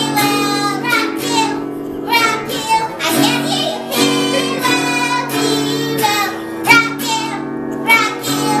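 A young girl singing a song while strumming chords on an acoustic guitar.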